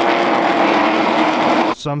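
Loud, steady engine noise from a pack of race pickup trucks running at speed, cutting off suddenly near the end.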